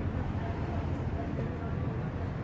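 Urban street ambience: a steady low rumble of road traffic with faint voices of passers-by, and a thin high whine starting about half a second in and lasting about two seconds.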